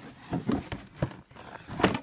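Cardboard shoe boxes being handled, with a few short knocks and scrapes as one box is fitted into another.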